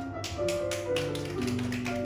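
A small audience clapping by hand, an irregular scatter of claps starting about a quarter second in, over keyboard accompaniment that plays on after the ocarina melody has ended.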